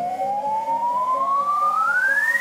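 Electronic dance music build-up: a siren-like tone sweeps steadily upward in pitch, with a hiss swelling alongside it, over the track's low rhythmic bed.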